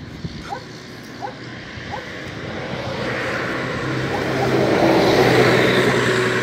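A bus approaching along the road, its engine and road noise growing steadily louder from about two seconds in and holding loud and close near the end.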